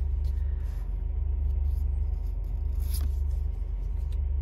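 Steady low engine rumble heard inside a parked car's cabin, the car idling. About three seconds in, a brief soft click as a trading card is moved to the back of the stack.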